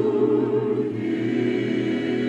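A choir and orchestra holding a sustained chord, with higher instruments or voices joining about a second in.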